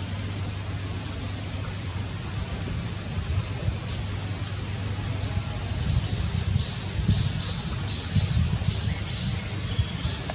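A bird calling over and over in short high chirps, about two a second, over a steady outdoor background hiss. Low rumbling bursts come in during the second half and are the loudest part.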